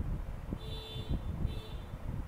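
Pen writing on paper: soft scratching and small knocks of the hand and pen on the desk, with a faint thin high tone twice, about half a second in and again near the end.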